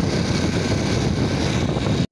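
Steady rush of wind buffeting the microphone on a moving motorcycle, with road and riding noise underneath.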